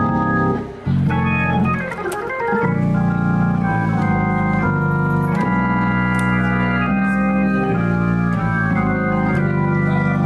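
Hammond B3 organ playing smooth gospel, both hands holding sustained chords that change every second or so over a low bass. The sound breaks off briefly just under a second in, then comes back in on a new chord.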